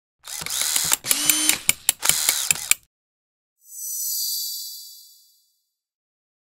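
Animation sound effects of a repair tool at work: a rapid run of mechanical clicks and ratcheting with short sliding tones, lasting about two and a half seconds. After a brief gap comes a high, airy whoosh that swells and fades out.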